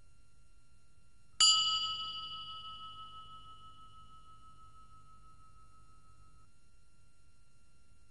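A single bell-like chime, struck once about a second and a half in and fading away over the next few seconds.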